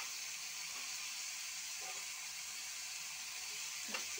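Chopped cabbage, tomato and onion sizzling in oil in a frying pan: a steady, even hiss.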